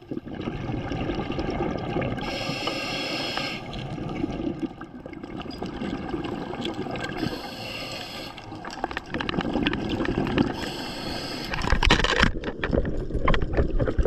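Scuba diver breathing through a regulator underwater: a hissing inhale about every four to five seconds, with exhaled bubbles gurgling and rumbling between breaths. A louder rush of bubbles comes near the end.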